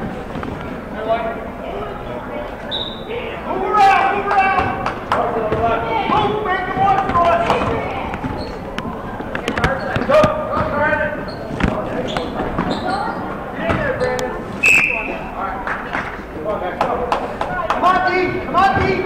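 Basketball being dribbled on a hardwood gym floor during play, with voices shouting and talking throughout, echoing in the large gym.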